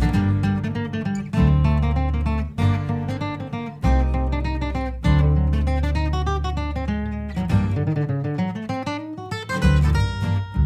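Background music: acoustic guitar playing, with plucked notes over held bass notes that change every second or so.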